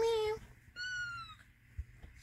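Kitten meowing once around the middle, a high, thin call of about half a second that falls slightly in pitch. At the very start a louder, lower drawn-out call that began just before is ending.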